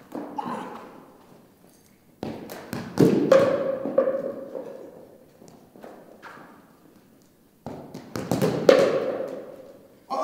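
Soccer balls thudding as they are kicked and strike the wall and cones, each impact echoing and dying away slowly in a large hall. There are several thuds, the loudest about three seconds in and near the end.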